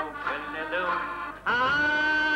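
A man singing into a microphone over piano accordion accompaniment. About one and a half seconds in, the voice slides up into a louder, long held note.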